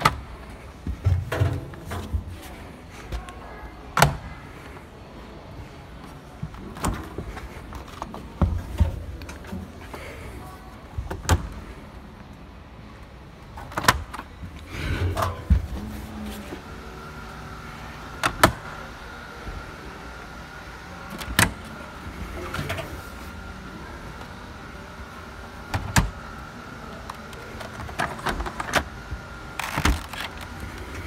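Drums of display front-loading washing machines spun by hand, whirring and rattling, with scattered knocks and clicks from the doors being handled. A faint steady tone comes in about halfway through.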